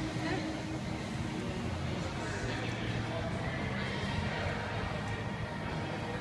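Indistinct background voices over a steady low hum, with no clear single event.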